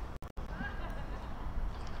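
Low, steady outdoor background ambience of hum and hiss between commentary phrases, broken by two very brief dropouts just after the start.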